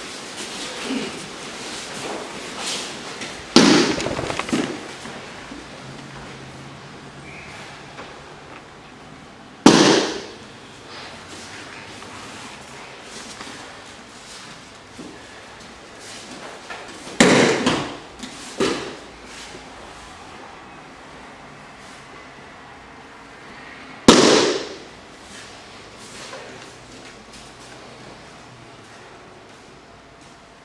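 Loud, sharp slaps of bodies or feet striking a foam training mat, five in all, two of them close together past the middle, each dying away within about half a second.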